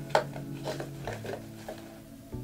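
Handling noise of a small hand sanitizer bottle being put into a small vegan-leather tote bag: a sharp click just after the start, then a few lighter ticks and rustles.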